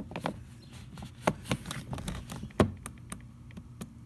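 Scattered light plastic clicks and knocks as fingers work at a Honda door's master power-window switch panel, pulling it loose from its clips in the armrest. The sharpest click comes a little past halfway.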